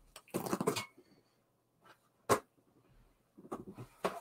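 Intermittent handling noises from a small fabric dog hoodie being set out on a tabletop: a short rustling burst near the start, a single sharp knock a little past the middle, and more rustling near the end.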